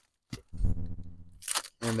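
A light click as a package or label is handled, then about a second of a man's low, steady closed-mouth "mmm" hum, and another click.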